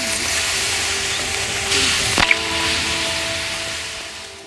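A 5S 5000 mAh lithium-polymer (LiPo) battery pack venting in thermal runaway after a dead short: a loud, steady hiss of smoke and gas jetting from the cells. It swells about two seconds in, where a sharp crack sounds. Faint music plays underneath.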